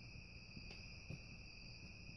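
Crickets and other night insects calling in a faint, steady chorus at several pitches, with two faint clicks about a second in.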